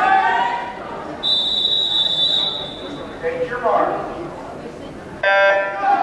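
A long, steady, high whistle blast about a second in, then near the end a short, loud electronic starting horn sounds, signalling the start of a swimming race. Voices are heard around them in a large pool hall.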